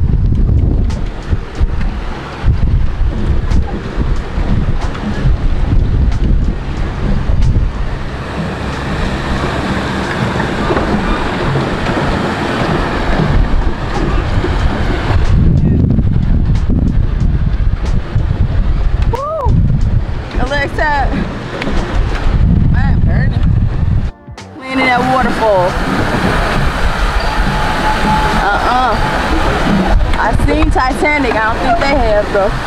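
Wind buffeting the camera microphone on an open paddle boat, a steady low rumble with water sloshing against the hull, and faint indistinct voices now and then.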